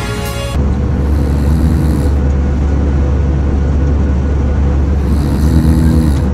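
Airliner jet engine and cabin noise during climb-out: a steady, loud low rumble. Background music plays briefly at the start.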